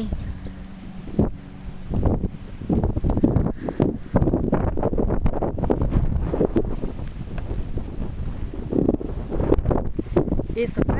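Wind buffeting the microphone in uneven gusts, a low rumble that swells and eases, stronger from a few seconds in.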